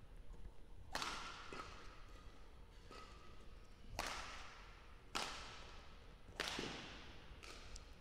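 Badminton rally: a racket hits the shuttlecock about six times, roughly a second apart, each a sharp smack with a short echo in the hall. The hits are faint.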